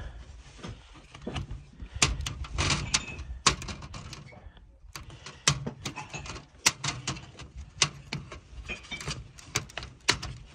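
Small scissors snipping a car grille mesh: a string of irregular sharp snips and clicks with light rattling of the mesh between them.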